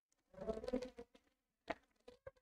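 A faint buzzing sound lasting under a second, then a few soft clicks near the end.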